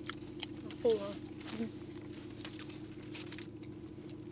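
Quiet eating of blood sausage out of paper wrappers: scattered soft mouth clicks and wrapper rustles over a steady low hum. A short murmured voice sound comes about a second in.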